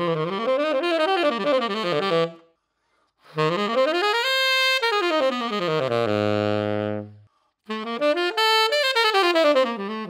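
Selmer Mark VI tenor saxophone with a Jody Jazz DV Platinum mouthpiece and a La Voz medium reed, played solo in fast jazz runs. There are three phrases with short breaths between them. The second phrase ends on a long low note, and the third climbs to a very high note before running back down.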